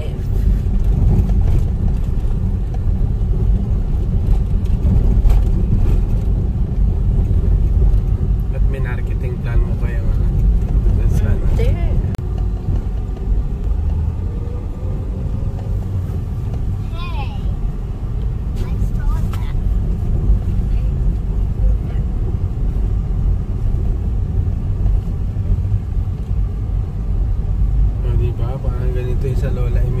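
Small car's engine and tyre noise heard from inside the cabin while driving on rural roads: a steady low rumble.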